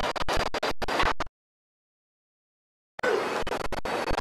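Harsh scratchy crackling of a glitching audio feed, full of sharp clicks. It cuts out completely for nearly two seconds in the middle and then snaps back on.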